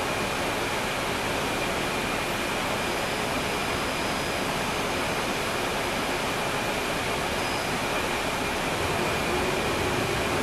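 Cabin noise inside a 2012 NABI 416.15 transit bus heard from near the rear: a steady rumble and hiss from its Cummins ISL9 diesel engine, with a faint steady high whine above it.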